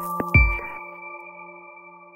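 The end of an electronic intro jingle: a last percussive hit with a deep bass thump just after the start, then a held high synth chord that slowly fades away.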